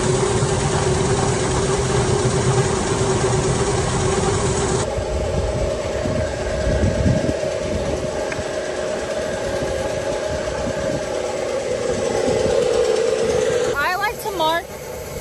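Steady drone of grain-loading machinery: a corn bin's unloading auger running with a constant hum inside the steel bin while corn is swept toward it. About five seconds in the sound changes abruptly to a higher steady hum beside the truck as the trailer is loaded.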